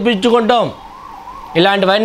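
A man preaching in Telugu in a drawn-out, chanting delivery, his syllables held and gliding in pitch, with a pause of about a second in the middle.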